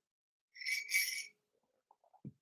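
Sipping a drink from a ceramic mug: two quick, airy sips close together, about half a second to a second in.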